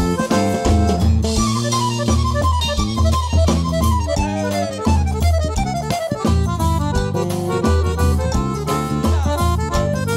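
A forró band playing an instrumental passage: an accordion carries the melody with quick falling runs over bass and percussion.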